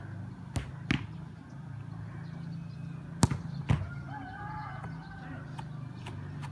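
Footballs being struck hard, heard as four sharp thuds in two pairs. The first pair comes about half a second in and just under a second in. The second, louder pair comes a little after three seconds, about half a second apart.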